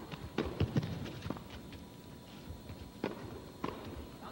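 Tennis ball knocks on an indoor court, racket hits and bounces: a quick run of about five taps in the first second and a half, then two sharper hits about half a second apart three seconds in.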